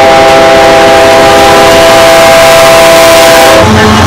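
Canadian Pacific diesel locomotive's air horn sounding one long, very loud chord of several notes at once as the locomotive passes close, cutting off near the end. The rumble of the passing locomotive and its wheels carries on beneath and after it.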